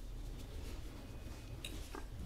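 Quiet handling sounds of a fork lifting herb salad and kofte onto a piece of soft flatbread, with a couple of faint clicks near the end, over low room tone.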